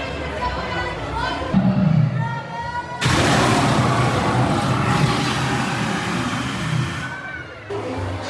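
Fire burst from the animatronic Gringotts dragon: a gas flame jet goes off suddenly about three seconds in as a loud, even rushing whoosh, lasting about four seconds before dying away, over crowd chatter.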